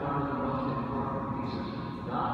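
Choral singing: sustained, chant-like notes held by several voices, ringing in a large reverberant church.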